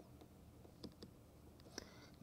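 Near silence with a handful of faint, irregular clicks: a stylus tapping on a pen tablet while a word is handwritten.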